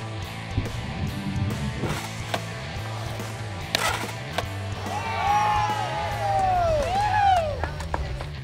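Skateboard rolling on a concrete snake-run wall over background music, with a sharp board clack about four seconds in. Then a few seconds of yelling and cheering voices near the end as the trick is landed.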